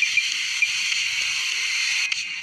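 Steady hiss of a heat gun blowing hot air onto a plastic water pipe to soften it, with a few faint short chirps over it.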